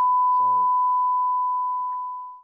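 Steady single-pitched test-tone beep, the reference tone that goes with television colour bars, fading away near the end.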